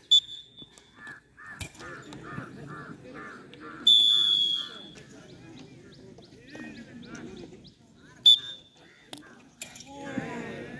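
Umpire's whistle blown three times: a short blast at the start, a longer, louder blast about four seconds in, and another short blast about eight seconds in, over steady crowd chatter. Early on a bird calls in a quick run of about nine repeated notes, and a few sharp knocks sound.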